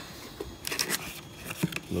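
Cardboard box flaps being pulled open by hand: several short scrapes and rustles of the carton.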